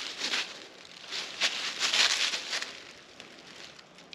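Footsteps crunching and rustling through dry leaf litter, a few irregular steps that fade toward the end.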